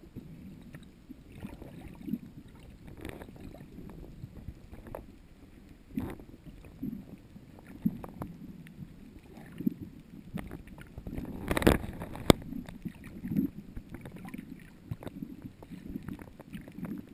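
Muffled underwater sound picked up through a camera's waterproof housing: a low churning of water with scattered clicks and knocks, and a louder rush of water ending in a sharp click about three-quarters of the way through.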